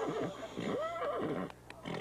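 A horse whinnying, the call tailing off with falling, quavering pitch over the first second and a half, followed by a short laugh near the end.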